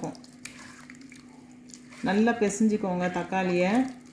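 Hand squeezing and mashing tomatoes in tamarind water in a clay pot: faint squelching and sloshing of liquid. A woman starts speaking about halfway through.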